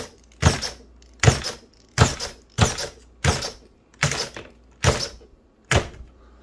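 Redcat SixtyFour RC lowrider hopping on its single servo with a short alloy servo horn: about eight sharp plastic clattering thumps, roughly one every three-quarters of a second, as the front end is thrown up and the wheels and chassis slam back onto the floor. It is running on the stock nickel battery pack, and the servo hits harder than with the stock setup.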